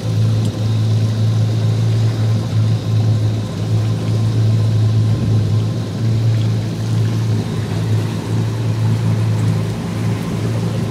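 Yamaha 242 Limited jet boat's engines idling, heard from on board: a steady low hum that swells and dips slightly.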